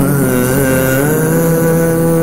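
Background score of a TV drama: a sustained held chord that slides down briefly at the start and then holds steady.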